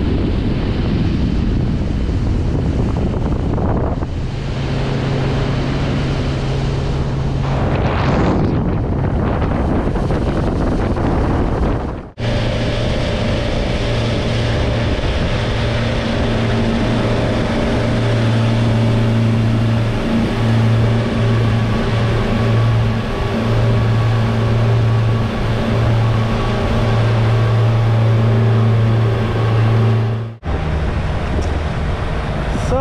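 Twin Yamaha F200 outboard motors running at cruising speed, a steady low engine hum over water rushing past the hull and wind on the microphone. The hum is strongest after a brief dropout a little under halfway.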